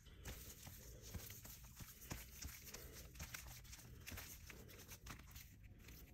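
Faint, irregular soft ticks and rustles of baseball cards in clear plastic sleeves being flipped through by hand.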